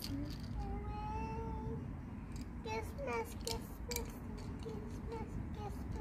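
A child's high voice calling a cat, 'kis, kis', in short repeated calls. One long, drawn-out meow-like call comes about a second in.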